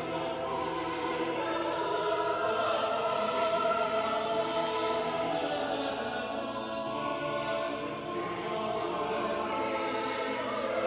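Choir singing a Palm Sunday anthem in sustained, overlapping vocal lines, on the words "Thou that sittest in the highest heavens."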